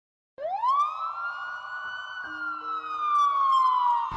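Ambulance siren: one wail that climbs steeply in pitch over about a second, then slowly falls.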